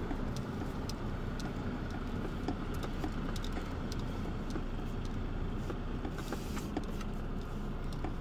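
Car cabin noise while moving slowly: a steady low engine and road rumble, with scattered light ticks and a short hiss about six seconds in.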